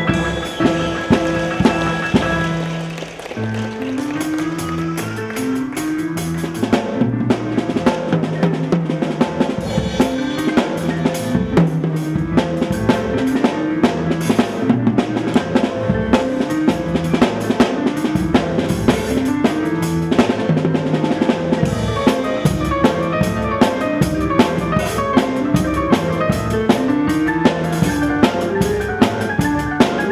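Electronic keyboard and drum kit playing together live. A held chord at the start gives way, about three seconds in, to a short repeating rising figure on the keyboard over a steady drum beat.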